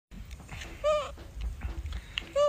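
A pet monkey's short, high-pitched call, given once about a second in.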